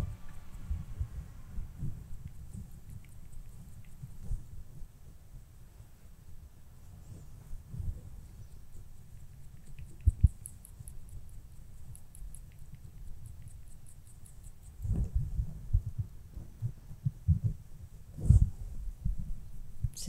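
Makeup brush working powder over the cheek and face close to the microphone: soft, irregular low thumps and rubbing, coming thicker in the last few seconds with one stronger thump.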